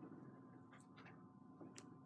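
Near silence: room tone with a faint steady hum and a few faint, scattered ticks.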